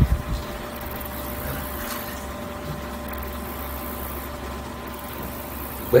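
Steady low background hum with faint room noise, unchanging throughout, with no speech.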